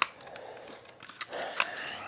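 Hard plastic parts of a Transformers Millennium Falcon figure clicking as it is handled: one sharp click at the start, then a few lighter clicks a little over a second later.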